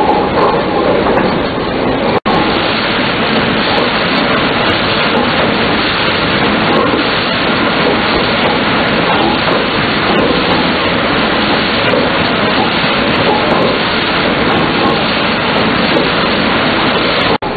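A paddle steamer's paddle wheel churning the river: a loud, steady rush of splashing water, broken by a brief dropout about two seconds in.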